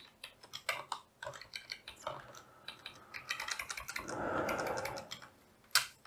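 Computer keyboard being typed on in short, irregular runs of key clicks while code is entered. About four seconds in there is a soft rushing noise lasting about a second.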